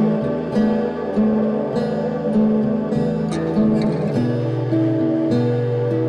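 Instrumental background music: a slow melody of held notes over a steady accompaniment, with the notes changing at a regular pace.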